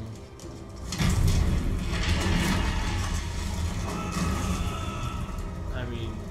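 Soundtrack of a live-action TV episode playing: music with a deep low rumble that comes in suddenly about a second in and carries on, with a few held high tones later.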